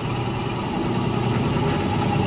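Benchtop drill press motor running steadily with an even hum while a spade bit bores into a block of wood.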